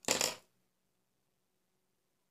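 A short rattle of small objects being handled, lasting about half a second, then near silence.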